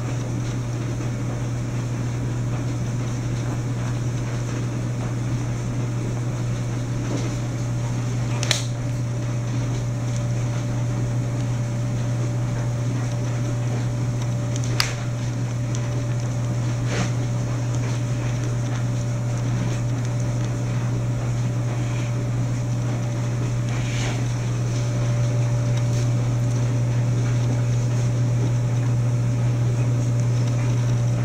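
Steady low mechanical hum with a few sharp clicks now and then; a faint steady higher tone joins about halfway through.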